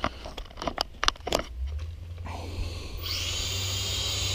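A few sharp clicks, then about two and a half seconds in the Syma X5C quadcopter's small electric motors and propellers start up and settle into a steady high whir.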